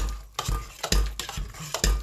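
Mashing soft sweet potato with butter and milk in a stainless steel saucepan. A metal masher presses and scrapes through the mash, knocking and clinking against the pot several times.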